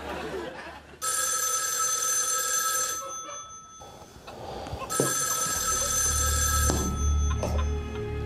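Old desk telephone's bell ringing twice, each ring about two seconds long with a two-second pause between, over low background music.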